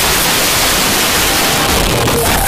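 Loud, steady hiss of recording noise that fills the sound, with faint traces of the choir music's tones beneath it.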